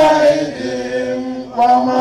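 A large group of voices chanting an Islamic devotional chant together in long held notes; the chant drops lower and softer about half a second in and swells back up near the end.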